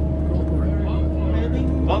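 Steady low rumble of a moving road vehicle heard from inside the cabin, with faint voices over it.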